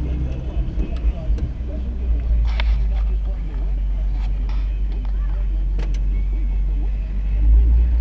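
1959 Chevrolet Bel Air's engine running at low speed, a steady low rumble heard from inside the car, with a few faint clicks.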